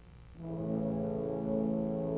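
Orchestra music: after a quiet passage, a sustained brass chord enters about half a second in and is held steadily.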